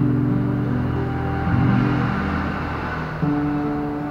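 Acoustic guitar playing chords, moving from a G chord to a D chord, with a new chord struck about three seconds in.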